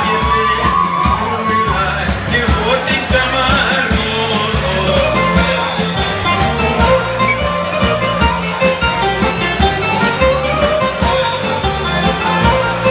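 Live Greek dance music from a band amplified through PA speakers, with a steady beat and bass line under a gliding melody.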